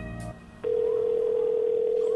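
Telephone dial tone: one steady low continuous tone, starting a little over half a second in and still sounding at the end, laid in as a sound effect on the word 'Booty-Call'.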